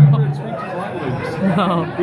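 People talking over one another in a large room, with a close man's voice loudest at the very start and quieter overlapping voices after it.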